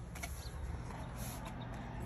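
Faint handling noise of a cardboard vacuum-tube box being picked up: a few light clicks and soft rustles, over a steady low hum.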